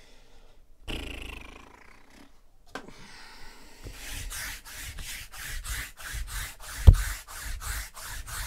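Sticky lint roller rolled across a cloth-covered tabletop, its adhesive crackling in a quick even rhythm of about three or four strokes a second, with one heavy thump near the end. A short rustle comes about a second in.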